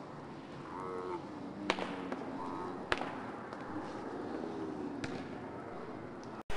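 Several drawn-out shouts during and after a weight throw, with two sharp knocks a little over a second apart.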